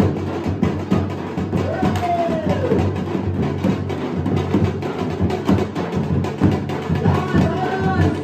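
Two dhol drums being played together in a fast, steady dance beat, dense with strokes. A high tone rises and then falls over the drumming twice, about two seconds in and again near the end.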